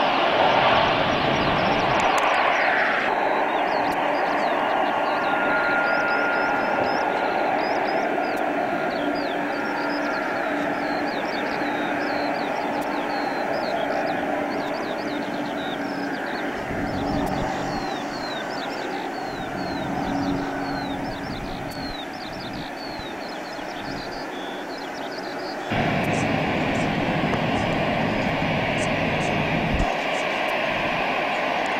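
Jet airliner engines throughout. At first an SAS McDonnell Douglas MD-80-series jet is heard on the runway, loudest in the first few seconds. After a sudden change the sound becomes the steadier, quieter hum and whine of jets on the taxiway, with many short high chirps over it. Near the end it jumps louder as Airbus twinjets taxi toward the microphone.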